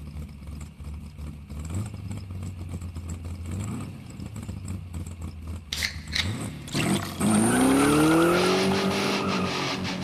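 Car engine idling low with brief blips of revs, then a few sharp clicks and a loud rev about seven seconds in whose pitch climbs and then holds.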